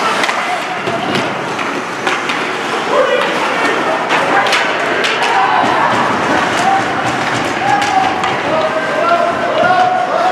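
Ice hockey play in an arena: sticks and puck clacking and knocking, skates on the ice, and voices calling out across the rink.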